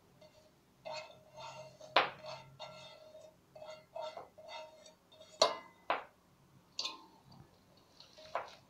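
Bowls clinking and scraping: a bowl knocked against the rim of a stainless steel mixing bowl as food is scraped out of it by hand, with the steel bowl ringing briefly. Sharper knocks stand out about two seconds in and twice more near the middle.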